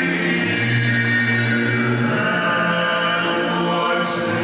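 Male vocal quartet singing in harmony through handheld microphones, several voices holding long sustained notes together.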